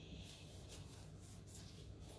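Faint snipping of large tailor's shears trimming the edge of a cotton fabric strip, several soft cuts.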